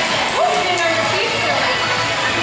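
Indistinct background voices of people talking in a gym, with no other sound standing out.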